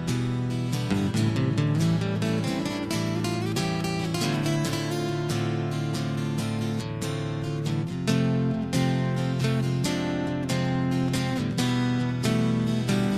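Instrumental song introduction: strummed acoustic guitar chords in a steady rhythm.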